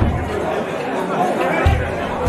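Crowd of spectators shouting and chattering, many voices overlapping at once, with a low thud near the end.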